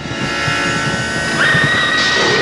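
Horror film soundtrack: tense music of steady held tones. About one and a half seconds in, a single high, piercing held tone enters over it.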